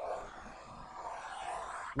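Tablet pen scratching steadily across a tablet screen, drawing one continuous curved line.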